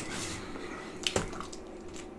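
Soft wet squishing of eating and handling a cheese pizza slice piled with saucy pork and beans, with a sharp click about a second in.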